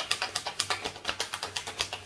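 A tarot deck being shuffled by hand: a quick, even run of crisp card-on-card taps, about eight to ten a second, as the reader draws clarification cards.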